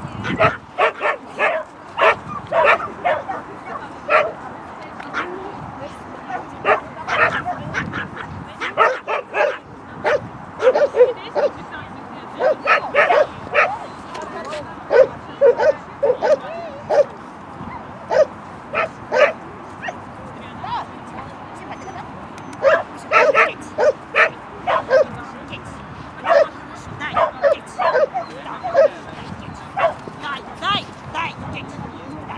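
Shetland sheepdog barking repeatedly in short yips, in quick runs of several barks separated by brief pauses.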